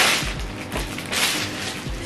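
Thin plastic packaging bag rustling and crinkling as it is opened, over soft background music.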